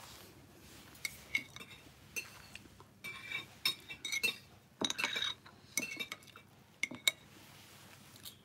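Cutlery clinking and tapping against a dish while eating: a scatter of short clinks, some with a brief high ring.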